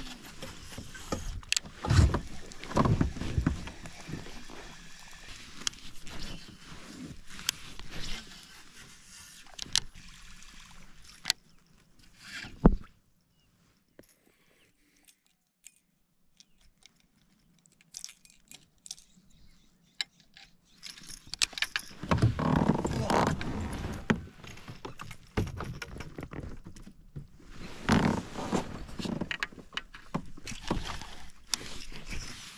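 Fishing from a kayak: a baitcasting reel being cast and cranked, with handling noise, water against the hull and a few sharp clicks and knocks in the first part. It drops almost to silence for several seconds in the middle, then the handling noise picks up again.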